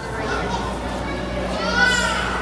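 Children's voices and chatter in a busy hall, with one high-pitched child's squeal that rises and falls near the end.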